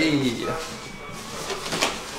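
Protective wrapping and cardboard rustling and crinkling as a bicycle wheel is lifted out of its box, with a few small knocks near the end. A short vocal exclamation is heard at the very start.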